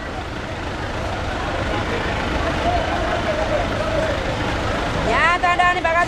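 Busy street ambience at a bus stage: a steady low rumble of vehicle engines and traffic under indistinct voices. Near the end a loud voice calls out.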